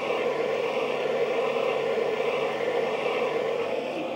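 Steady mechanical hum from a 1/10 scale hydraulic RC D11 bulldozer running with its systems switched on, even in pitch and level throughout, cutting off abruptly at the very end.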